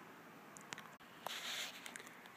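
Quiet room with a few faint, sharp clicks and a brief soft rustle around the middle.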